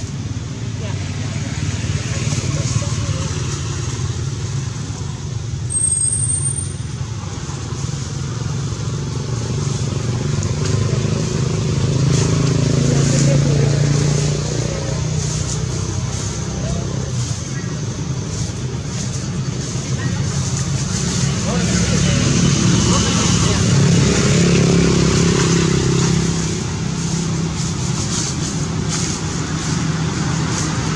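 Steady low engine-like hum of a motor running, swelling twice, with indistinct background voices and a brief high whistle about six seconds in.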